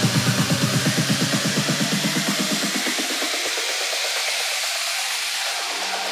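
Electronic dance music from a DJ set: a fast pulsing beat whose bass is filtered away over the first three seconds, leaving a wash of hiss-like noise and synths as a build-up with no low end.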